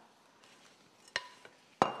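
Two small clinks of kitchenware, a light one about a second in and a sharper, louder one near the end, each with a short ringing tone, as utensils meet a measuring cup while vanilla is measured.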